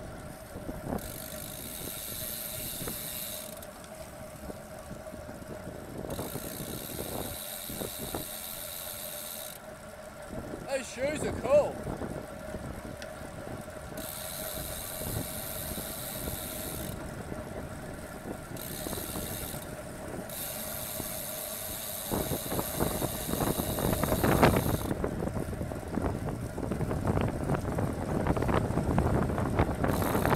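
Road bicycle riding in a bunch, heard through a bike-mounted camera's microphone: steady tyre and road noise with a constant hum, and a high hiss that comes and goes in spells of a few seconds. Wind on the microphone grows louder in the last third.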